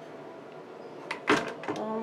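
A single knock about a second in, followed by a few lighter clicks, from handling at the open under-sink kitchen cabinet.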